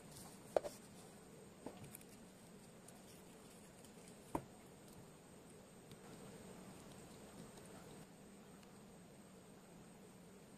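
Near silence with a faint steady hum, broken by a few light clicks and taps; the sharpest is about four seconds in. They come from small electronics parts, solder wire and a soldering iron being handled on a workbench.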